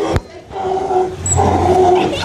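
Sea lion barking: two drawn-out, steady-pitched calls, the second starting a little past a second in. A sharp click comes just before them.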